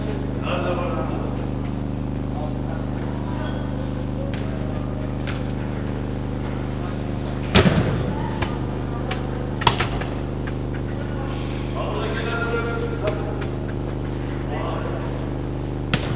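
Football thudding in an enclosed indoor pitch hall: one hard impact with a short echo about seven and a half seconds in and a sharper knock about two seconds later. These come over players' distant shouts and a steady electrical hum.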